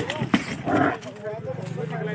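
An injured nilgai trapped in a car's broken windshield gives a short, noisy grunt just before a second in, shortly after a sharp knock. A low steady hum sets in about halfway through.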